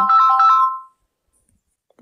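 A short electronic ringtone-like chime: a few clear notes stepping up and down, fading out about a second in.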